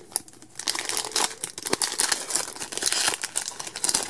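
Foil wrapper of a Pokémon TCG Steam Siege booster pack crinkling and tearing as it is pulled open by hand, a dense run of irregular crackles.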